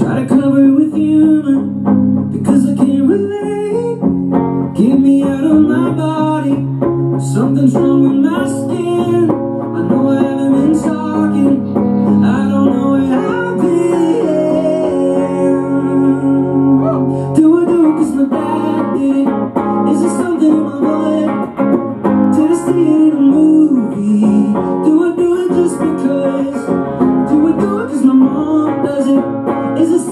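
Live guitar music played on stage: a sustained instrumental passage, with notes sliding up and down over a steady low part.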